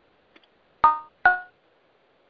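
Two short electronic chime notes about half a second apart, each starting sharply and dying away, heard over a conference-call phone line.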